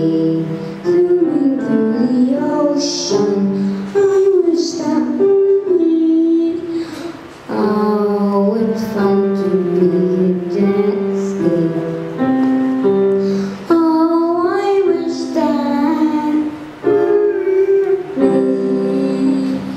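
A boy singing his own song and accompanying himself with chords on an electric keyboard.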